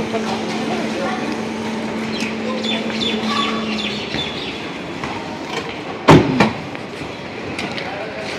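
A car door slammed shut about six seconds in, one loud sudden thud, over faint murmured voices and a steady hum that stops about halfway.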